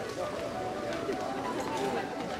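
Indistinct chatter of a crowd, many people talking at once at a steady level.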